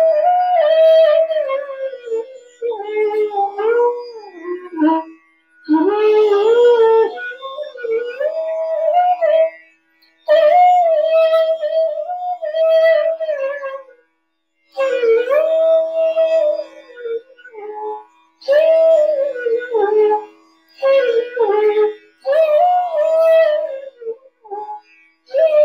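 Bansuri (bamboo flute) playing a slow melody in Raga Kedar, gliding between notes in short phrases broken by brief pauses for breath, over a steady low drone note.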